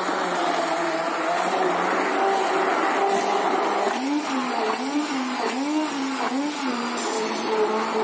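Hand-held immersion blender running in a plastic jug, blending a thick banana and oat smoothie mixture. Its steady motor hum wavers up and down in pitch several times in the second half.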